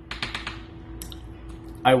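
A quick run of small clicks, then one sharper click about a second in.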